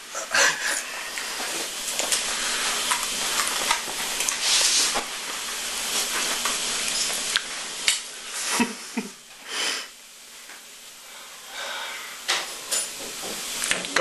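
A man breathing hard and hissing air in and out through his mouth against the burn of a bird's eye chilli, with a few short groans about two-thirds of the way through.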